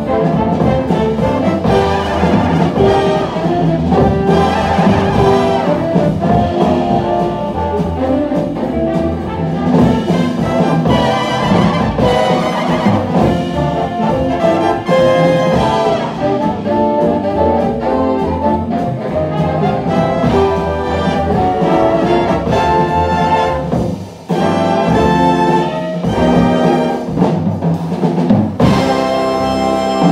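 Big band jazz ensemble playing live: saxophone section, trombones and trumpets over upright bass and drum kit. The band drops out briefly about three quarters of the way through, then comes back in full.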